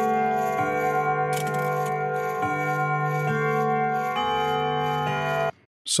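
A clock's carillon chime playing a tune of overlapping, sustained bell notes, a new note struck about every second, from a grandfather clock recording played back in a DAW. It cuts off abruptly about five and a half seconds in when playback is stopped.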